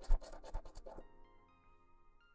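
A coin scraping the scratch-off coating from a lottery ticket in a quick run of short strokes, the first one loudest. The scratching stops about a second in.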